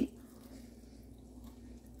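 Faint chewing of a mouthful of breaded plant-based chicken tender.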